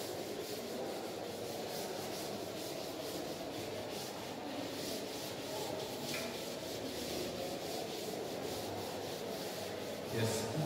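Chalkboard eraser rubbed across a blackboard in steady, closely repeated strokes, wiping off chalk writing.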